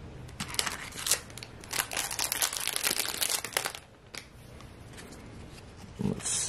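Hockey card pack wrapper being torn open, crinkling and crackling for about three seconds, followed by a few faint clicks as the cards are handled.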